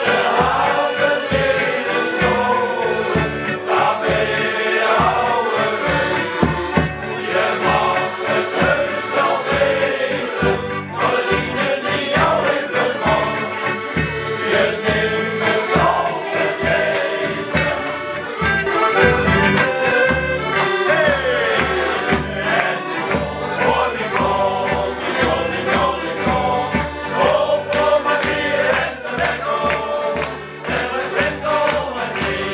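Male shanty choir singing a sea shanty together, accompanied by accordion, over a steady beat.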